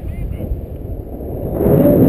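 Wind rushing over a camera microphone in paraglider flight, a low buffeting that grows louder about one and a half seconds in.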